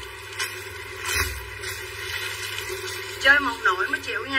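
A voice speaking briefly near the end, over a steady low background hum, with two short knocks in the first second and a half.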